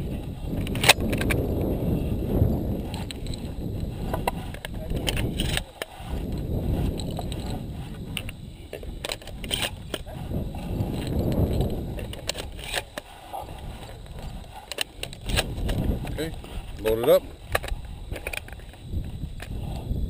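Wind buffeting an open-air camera microphone: an uneven low rumble that swells and drops throughout. Sharp clicks and knocks break through now and then, the loudest about a second in and again near the end.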